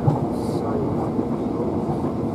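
Southern Class 377 Electrostar electric multiple unit running at speed, heard from inside the carriage: a steady running rumble of the train on the track.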